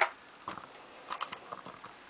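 Light clicks and taps from a hand handling a LEGO minifigure on a wooden tabletop, with one sharper knock at the very start and a few small ticks through the middle.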